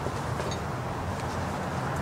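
A steady low mechanical hum under outdoor background noise.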